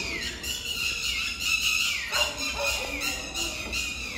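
An animal squealing: a run of long high-pitched cries, each ending in a falling glide, about four in the space of a few seconds.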